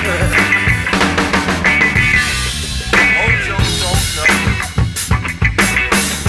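Instrumental rock jam: a drum kit keeps the beat with bass drum and snare while a guitar plays bending melodic lines. The drum strokes come quicker over the last couple of seconds.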